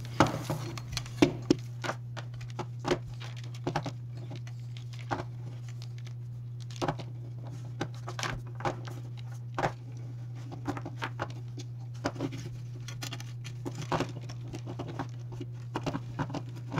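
Scattered light clicks, taps and rustles of a cable being coiled around a plastic game controller carrying a metal phone-mount plate as it is handled and turned, over a steady low hum.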